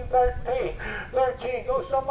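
An auctioneer's bid-calling chant into a handheld microphone: a fast, sing-song run of spoken numbers with no pauses.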